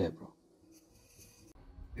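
Pen scratching on lined paper as Hindi letters are written, a faint high-pitched scratch lasting under a second, about halfway through. A man's voice is heard briefly at the start, and a low rumble comes in near the end.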